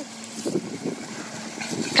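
Truck engine idling steadily, a low even hum.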